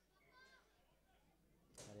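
Near silence with faint distant voices, then a brief hiss and a man's voice starting near the end.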